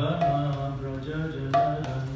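A man sings a devotional chant in long, held notes to his own mridanga drumming, with two sharp drum strokes, one at the start and one about one and a half seconds in.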